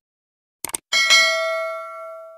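Subscribe-button sound effect: a quick double mouse click, then a bright notification-bell ding that rings on and slowly fades.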